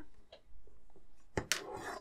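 Hands handling small plastic model-kit parts on a plastic chassis bulkhead, with one sharp click about one and a half seconds in followed by a brief rustle.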